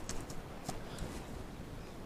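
Faint handling sounds: a few soft clicks and rustles as hands work a cut-down cardboard milk carton filled with potting compost, over a quiet background.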